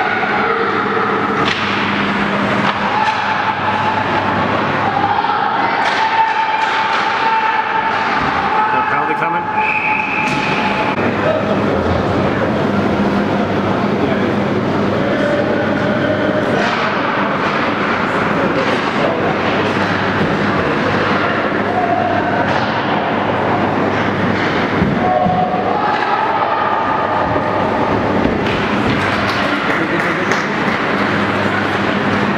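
Indoor ice-rink game sound during youth hockey: spectators talking and calling out, with sharp clacks of sticks and puck and skates on the ice, over a steady low hum. A brief high whistle sounds about ten seconds in.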